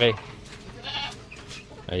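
A goat bleats once, briefly and fainter than the voice, about a second in.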